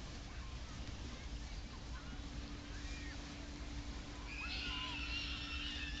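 Beach ambience: a steady low rumble of wind on the microphone under faint, distant voices of people in the water and on the sand. About four seconds in, a high wavering shout or shriek cuts in and lasts to the end.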